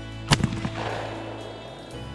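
A shotgun fired once at a trap target, about a third of a second in, with its report echoing away over the next second.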